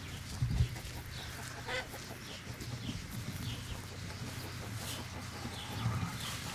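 Chickens clucking now and then over a steady low rumble, with a single low thump about half a second in.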